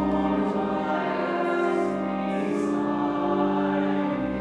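Hymn sung by a few voices together over a held organ chord.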